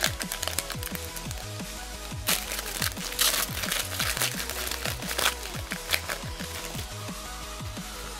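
A foil booster-pack wrapper crinkling as it is torn open by hand, in bursts about two to three seconds in and again around five seconds. Electronic music with a steady kick-drum beat plays underneath.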